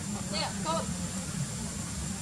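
A steady low rumble, with a few short, faint pitched calls about half a second in.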